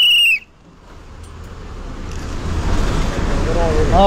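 A shrill whistle blast that cuts off shortly after the start. After a brief dip, the low rumble of the bus's engine and road noise builds steadily louder.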